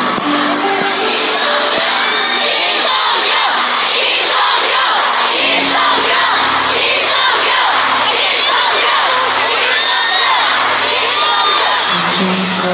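A large concert crowd screaming and cheering loudly, many high voices overlapping without a break, with a soft held accompaniment underneath.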